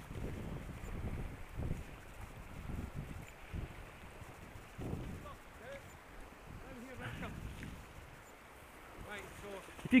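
Wind buffeting the microphone in irregular low rumbles, strongest in the first few seconds, over a steady hiss of flowing river water.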